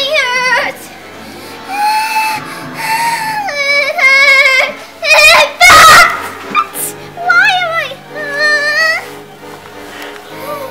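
A child wailing in high, wavering cries, broken into several long stretches, over background music, with a loud noisy burst about six seconds in.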